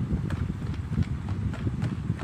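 Wire balloon whisk beating a creamy mixture in a plastic tub, the wires clicking against the tub's sides in an uneven rhythm of about three or four clicks a second over a low rumble.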